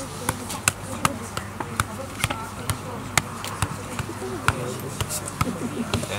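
A football being juggled with the feet: a steady run of sharp kicks on the ball, about two a second, with voices chattering in the background.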